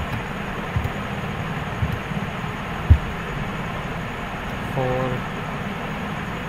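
Steady low background rumble with a few dull thumps, the loudest about three seconds in. A brief hummed sound comes near five seconds.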